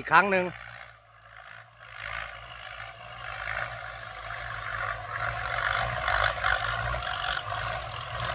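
Farm tractor engine running under load as the tractor works the field toward the listener, growing steadily louder from about two seconds in.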